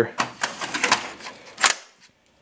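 Plastic cooling shroud of a Dell PowerEdge 1900 server clicking and rattling against the chassis as it is pressed back into place, with one louder, sharp click about a second and a half in as a securing clip engages.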